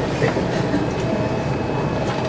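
Steady room tone in a classroom: an even hum and hiss with a faint steady high tone, and no speech.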